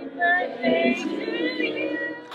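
A voice singing over background music.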